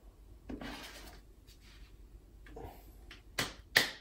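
Plastic shaker bottle being handled as its lid is fitted, with faint rubbing, then two sharp plastic clicks near the end as the cap snaps shut.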